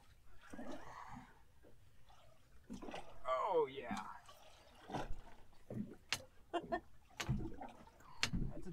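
Indistinct talk on a small boat, followed in the second half by a quick run of sharp clicks and knocks from gear being handled as a fish is reeled in.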